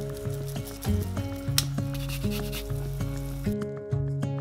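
Food sizzling in a saucepan on the hob under background guitar music; the sizzle cuts off abruptly near the end, and there is one sharp click about halfway through.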